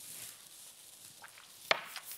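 A small shot glass set down on a glass-topped table with one sharp click near the end, after a quiet pause with a faint hiss.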